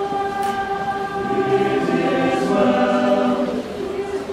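Mixed choir of boys and girls singing a hymn in long held chords; lower voices join partway through and the chord shifts near the end.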